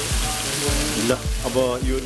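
Chopsuey sauce sizzling and bubbling in a hot wok over a gas flame, a steady hiss, under a regular low thump about three times a second.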